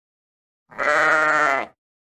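A single sheep baa, about a second long, with a wavering, quavering pitch.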